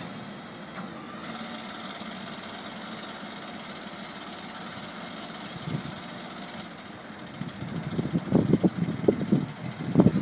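Work truck's engine idling steadily. From about seven and a half seconds in, irregular low, gusty bursts rise above it and become the loudest sound.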